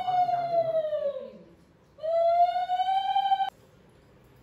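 Conch shell (shankha) blown in two long, steady notes: the first sags in pitch and fades out as the breath runs out, and after a short pause the second rises into a steady note and cuts off sharply. This is the conch sounded during the Bengali Bhai Phota ritual.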